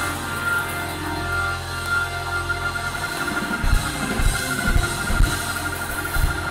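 Church instrumental music playing a short praise break: held chords sound throughout, and drum hits come in a little past halfway.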